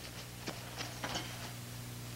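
A few faint, light clicks and taps over a steady low hum. The taps come irregularly, about four of them in the first second and a half.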